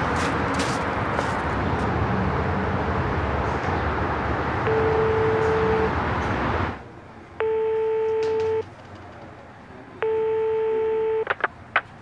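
Steady outdoor street noise, then a telephone ringback tone: three short steady beeps about two and a half seconds apart, the first under the street noise, the others on a quiet background. A few sharp clicks come near the end as the call is picked up.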